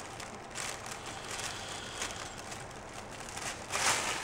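A person drawing a long, airy inhale of vapour through the mouthpiece of an inflated plastic vapour bag, then a loud breathy exhale just before the end.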